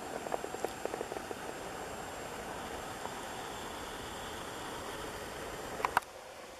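Camcorder zoom motor making a string of faint irregular ticks in the first second and a half as the lens zooms back out, over a steady background hiss. A short high chirp sounds near the end.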